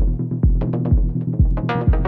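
Melodic techno / progressive house music: a steady four-on-the-floor kick drum about twice a second over a sustained bass, with hi-hats, and a synth melody coming in near the end.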